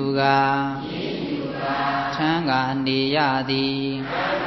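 A Buddhist monk's voice chanting in long, drawn-out notes on a steady pitch, with small rises and bends between phrases, in three held stretches.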